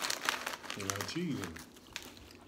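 Food packaging, paper sandwich wrapper and a crisp bag, crinkling in quick rustles as it is handled, thinning out near the end. A brief voiced murmur sounds about a second in.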